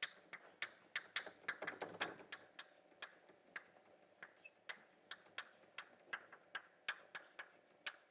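Chalk writing on a blackboard: an irregular run of sharp, light clicks and taps, several a second, busiest about one to two seconds in.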